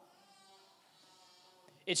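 A pause in a man's speech in a large hall: near silence with the echo of his last words fading, then his voice starting again at the very end.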